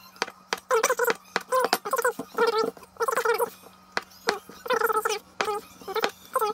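Large kitchen knife chopping through floured noodle dough onto a wooden table in a run of quick taps. Over it come repeated short, wavering squeaks, about two a second, from an unseen source, with a steady low hum underneath.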